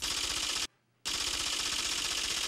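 Rapid, even typewriter-style clicking, a sound effect for caption text typing onto the screen. It breaks off for about a third of a second after half a second or so, then runs on.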